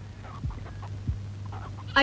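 Faint clucking of chickens over a steady low hum, with two soft low thumps about half a second and a second in.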